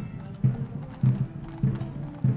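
A military band playing a march with a steady beat, about one and a half beats a second, mixed with the clip-clop of cavalry horses' hooves on the road as mounted troopers walk past.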